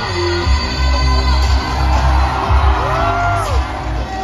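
Live pop song played loud through a concert PA and recorded on a phone from the audience: a heavy bass beat throughout, with a sliding tone that rises and falls near the end.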